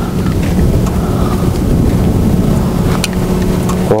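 Wind buffeting the microphone: a loud, rumbling rush with a faint steady hum beneath it.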